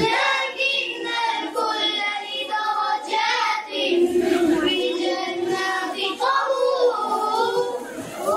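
Children singing a melody with long held notes.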